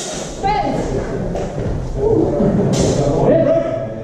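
Men's voices calling out in a large, echoing sports hall, with a thud and a sharp clatter partway through.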